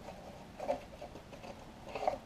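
Printed cardboard sheets being slid and lifted out of a cardboard box: a few short scrapes and taps of card, the sharpest about two-thirds of a second in and again at the end.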